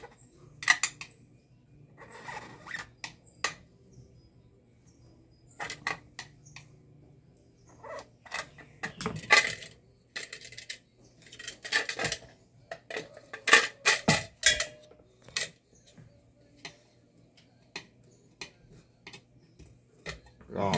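Scattered metallic clicks, taps and short scrapes of a flat-blade screwdriver and fingers on an aluminium pressure-cooker lid as a safety valve is pressed into its hole. They come irregularly, busiest and loudest from a little under halfway to about three-quarters through.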